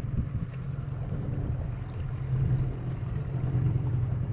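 Small outboard motor on an inflatable dinghy running steadily at low speed, a continuous low drone, with wind noise on the microphone.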